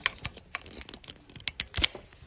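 Handling noise from a phone being moved about: an irregular run of about ten small clicks and taps, the loudest near the end.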